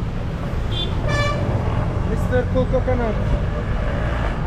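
A vehicle horn sounds once, briefly, about a second in, over a steady rumble of road traffic.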